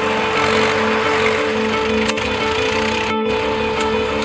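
Background music from a film soundtrack: a steady held drone over a repeating low figure, breaking off for a split second a little after three seconds in.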